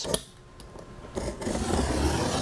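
A sharp knife blade drawn along the edge of an aluminum sign blank, trimming off the overhanging printed sign-face film, a steady scraping rasp that starts about a second in.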